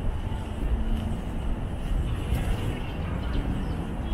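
Outdoor city ambience: a low, uneven rumble with no clear single source.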